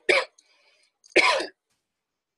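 A person coughing: two short, loud coughs, one right at the start and another a little over a second in.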